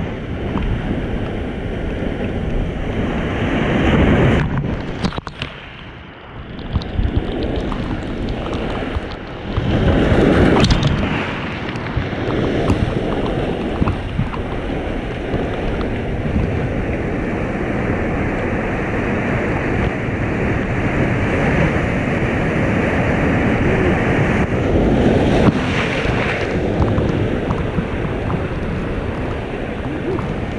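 Ocean surf breaking against rocks, with wind buffeting the microphone. There is a louder surge about four seconds in, a brief lull after it, and a stronger wash around ten seconds in.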